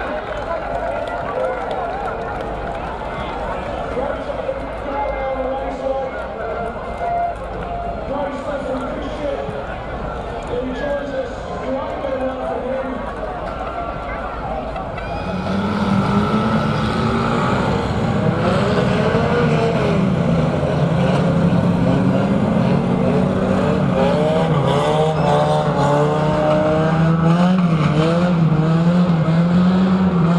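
Engines of a pack of banger-racing vans running together, with a murmur of voices underneath at first. About halfway through, a loud engine comes in close, its note rising and falling as it revs.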